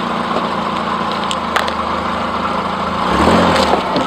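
First-generation Subaru Forester's flat-four engine idling steadily as the car creeps forward. About three seconds in, its note drops lower and gets louder for under a second as the front wheel climbs the ramp and the engine takes load.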